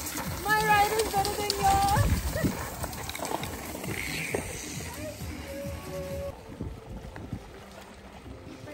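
Voices calling out over background music.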